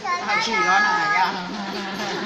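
Speech: people talking in Thai.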